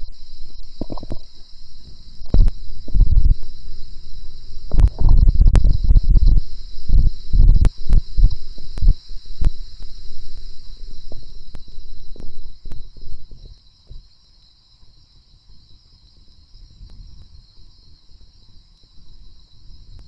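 Computer keyboard keystrokes as clicks at an irregular pace, mixed with heavy low thuds and rumble on the microphone; both stop about thirteen seconds in, leaving a faint steady hiss.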